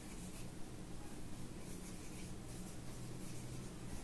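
Marker pen writing on a whiteboard: faint scratchy strokes as a line of words is written.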